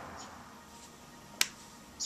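A sharp click as a small leather-hard clay ring is set down on the pottery wheel head, about one and a half seconds in, with a fainter click at the very end.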